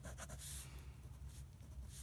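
Faint scratching of a Pilot Precise V5 rollerball pen tip drawing straight lines on a paper worksheet.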